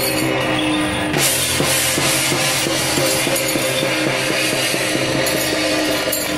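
Temple procession percussion music: drums struck in a steady quick beat, with gong and cymbal crashes and a held tone over them, accompanying a Guan Jiang Shou troupe's performance.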